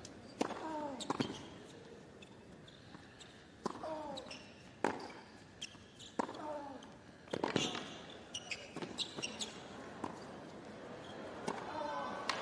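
Tennis ball knocks: a few bounces of the ball on a hard court before the serve, then the serve and a rally of racquet strikes and bounces in the second half, with several quick hits close together.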